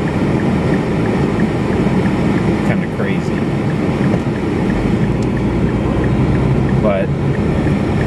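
Car interior noise, engine idling at a stop, with the turn signal ticking steadily at about three ticks a second. About five seconds in, the engine rumble grows as the car pulls away into its turn.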